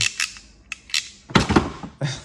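A few light clicks of a handheld ratcheting cable crimper being handled, then a couple of dull thunks about one and a half seconds in as the tool is set down in a hard plastic tool box.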